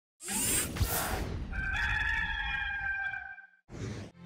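A rooster crowing once, one long call that holds and trails off, as an intro sound effect. It follows a sudden rushing burst at the start, and a short whoosh comes just before the end.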